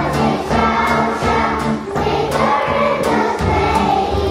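A song sung by a group of voices over an accompaniment with a steady beat and a strong bass line.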